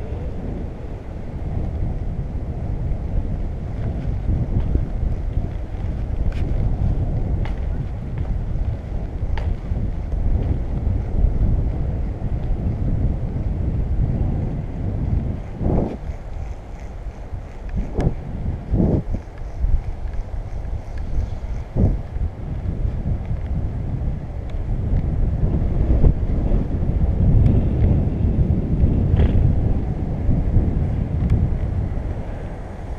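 Wind rumbling over the microphone of a camera riding on a moving bicycle, steady throughout, with a few short, sharper sounds in the middle.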